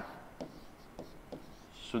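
Chalk writing on a chalkboard: a few soft taps as the chalk meets the board, then a faint scratch near the end.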